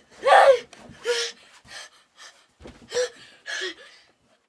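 A child crying, sobbing in short gasping bursts, about six catches of breath in four seconds, the first the loudest.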